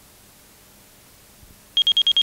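Steady hiss of a blank recording, then near the end a sudden rapid run of loud, high-pitched electronic beeps, about nine a second.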